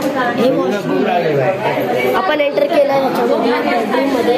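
Several people, mostly women, talking over one another in a room: indistinct overlapping chatter.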